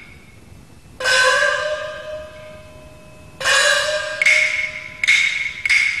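Chinese opera percussion: a small gong struck twice, about a second in and again near the middle, each stroke ringing on and rising slightly in pitch. It is followed by quicker strikes over a steady high ringing tone.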